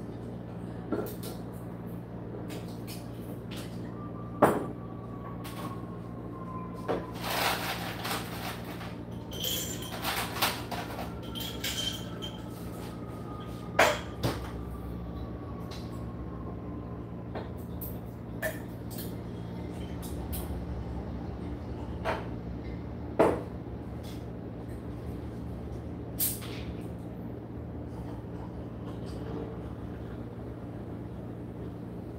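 Steady low room hum with scattered knocks and clicks of household handling off-camera, cupboard doors opening and closing among them. The loudest knocks come about four, fourteen and twenty-three seconds in, with a busier run of handling noise between about seven and twelve seconds. Two faint, slowly falling tones can also be heard.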